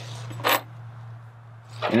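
One brief metallic clink about half a second in as 14-gauge steel wire and hardware are handled, over a steady low hum.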